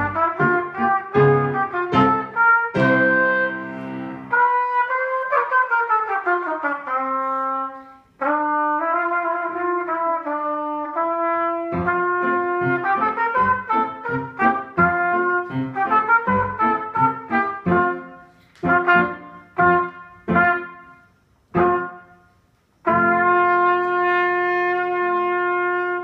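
Solo trumpet playing a march-style étude: quick tongued notes, a falling run of notes about five seconds in, short detached notes with pauses near the end, then a long held final note.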